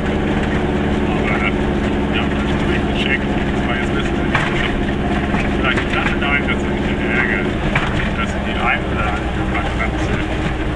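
Goggomobil's small air-cooled two-stroke twin engine running steadily while the car drives along, heard from inside the cabin.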